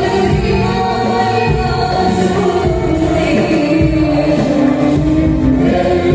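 Live song with a young woman singing a sustained, gliding melody through a microphone, backed by a group of singers and a dense low accompaniment that fits frame drums.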